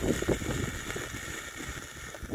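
Wind buffeting the microphone over the steady hiss of a red Bengal flame burning on its stick.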